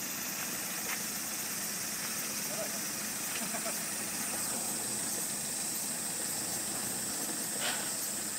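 Toyota Land Cruiser 70's diesel engine running low and steady under a constant high-pitched hiss, with a light click near the end.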